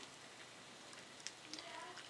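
Near silence: faint room noise with a few soft clicks.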